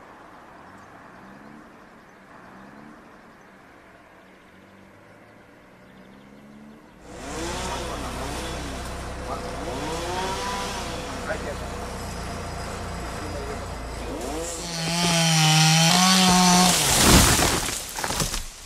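Chainsaw revving in repeated rising and falling surges from about seven seconds in, then held at high speed near the end, with a sharp loud burst just before the end; before the saw starts there is only a faint background hum.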